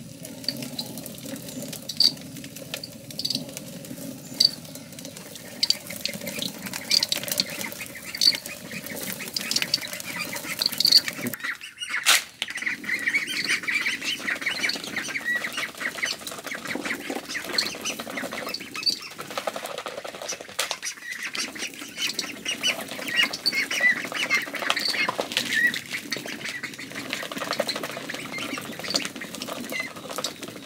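Hand-turned stone mill grinding grain: a steady gritty scraping of stone on stone with a regular beat about once a second. From about twelve seconds in, domestic ducks quack close by as the grinding goes on.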